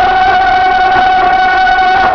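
Crowd of men chanting a noha in unison, holding one long steady note.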